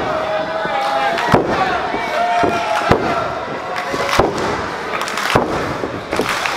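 Four sharp smacks about a second and a half apart, a wrestler's blows landing on his downed opponent's back in the ring, over shouting from the crowd.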